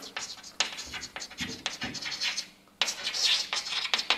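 Chalk scratching and tapping on a chalkboard as a line of text is written, in a quick run of short strokes, with a short pause about two and a half seconds in before the writing resumes.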